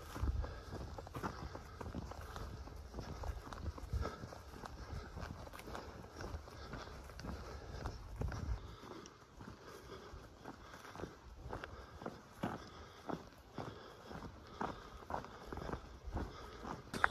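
Footsteps of a hiker walking on a grassy dirt trail, soft regular steps about twice a second. A low rumble runs under them for the first half.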